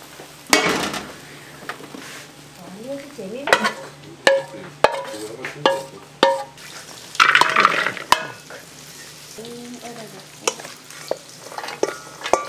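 A spatula stirring and tossing shredded vegetables in a hot frying pan: frying sizzle that swells about half a second in and again around seven seconds in, with many sharp clinks of the spatula against the pan.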